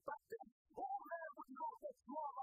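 A male preacher's impassioned voice into the pulpit microphone, in short, sharply broken phrases with a sing-song, chanted rise and fall in pitch.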